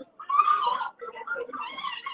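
People's voices talking in a small room, led by one loud, high-pitched voice lasting under a second near the start, followed by quieter talk.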